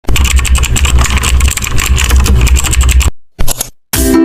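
Loud intro sound effect: a fast, dense run of clicks over a low rumble that cuts off about three seconds in, followed by a brief burst.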